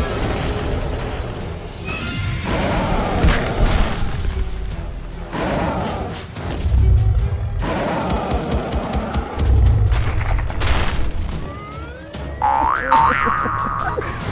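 Cartoon soundtrack of music with sound effects: several heavy booms, and a run of short rising glides near the end.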